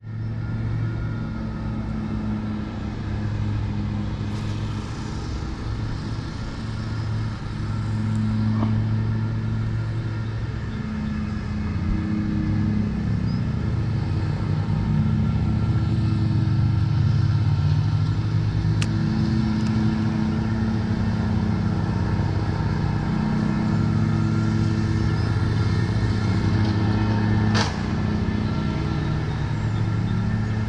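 Lawn mower engine running steadily, its hum swelling and fading slightly and growing louder about midway. A sharp click sounds near the end.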